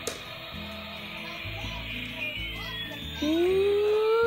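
Battery-powered toy airplane playing its electronic tune with a steady beat, and a falling whistle-like tone about two seconds in. Near the end a long, rising 'ooh' is voiced over it.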